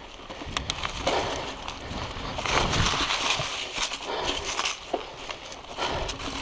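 Mountain bike rolling along a dry, leaf-covered dirt singletrack. The tyres crunch over leaves and ground, and the bike rattles, with a few sharp clicks near the start. The rattle is loudest around the middle.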